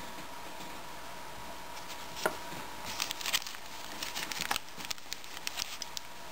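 Light, scattered crinkling and clicking of a duct-taped plastic Ziploc bag and its contents being handled, with a sharper click about two seconds in and a cluster of crinkles around three seconds.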